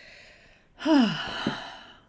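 A woman sighs. A faint breath in is followed, about a second in, by a loud voiced sigh that falls in pitch and trails off into breath.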